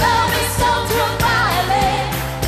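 Live pop song: a woman singing the lead melody over a full band backing with a steady beat.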